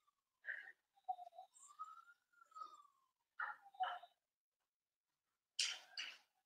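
Faint whining from a dog: a few soft, high cries that rise and fall in pitch, with a short breathy puff near the end.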